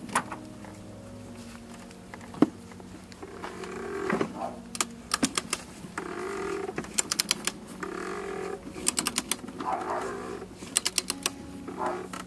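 Ratchet of a click-type torque wrench clicking in quick runs as it is swung back and forth, tightening the oil filter housing cap, with short scraping sounds between the runs. The wrench has not yet reached its 24 N·m setting.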